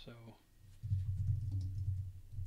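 Typing on a computer keyboard, a run of muffled keystrokes starting about a second in.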